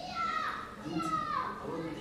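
A voice speaking, high in pitch with downward glides, twice rising to its loudest: about a quarter second in and again about a second in.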